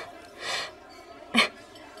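A soft breath-like exhale about half a second in, then a brief, short vocal sound just before the halfway mark of the second second, over faint room background.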